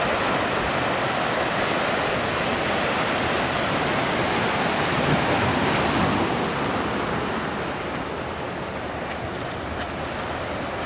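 Breaking surf and rushing whitewater, a steady wash of noise that swells slightly around the middle and eases off toward the end.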